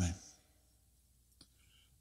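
The end of a man's spoken word, then a quiet pause broken by one short, soft click about one and a half seconds in.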